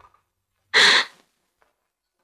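A woman's single short, breathy vocal sound, about a second in.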